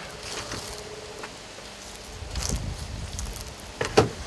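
Handling noise from a fiberglass velomobile shell: faint knocks and rubbing as hands move on the cockpit rim, over a low rumble, with one sharp knock near the end.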